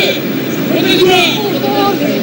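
High-pitched voices shouting over a steady crowd din, loudest about a second in.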